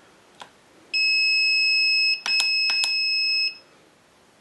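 Turnigy 9X radio transmitter's buzzer sounding a steady high-pitched beep for about a second, then after a brief break again for over a second, with a few sharp clicks over it, as the radio loads a newly created model. A faint click comes before the beeping.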